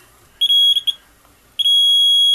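Sonic Bondmaster bond tester's alarm beeping, a single high steady tone: a short beep followed by two quick blips about half a second in, then a longer beep from about a second and a half in. The alarm sounds as the probe passes over a drilled hole in the composite panel, signalling a flaw indication.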